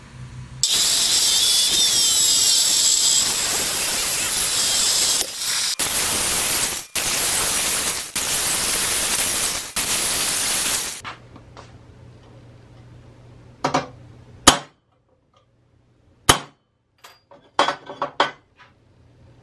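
Angle grinder with a cut-off wheel cutting through square steel tubing for about ten seconds, with a few brief dips, then stopping. Several sharp metal clinks and knocks follow as the tube is handled on a steel table.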